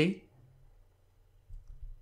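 A man's voice finishing the word "see", then a quiet pause with only a faint low room hum.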